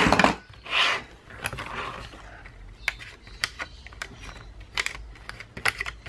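Handling noise as the plastic punch board is pushed aside across a cutting mat, with paper rustling. From about halfway in comes a run of small sharp clicks and taps as a punched paper sheet is worked onto the plastic discs of a discbound planner.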